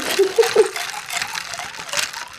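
Plastic straw worked up and down and stirred in a clear plastic cup of green tea, rubbing against the plastic with a steady crinkly scraping. A short laugh comes over it early on.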